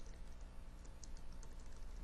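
Computer keyboard being typed on: faint, irregular key clicks, several a second.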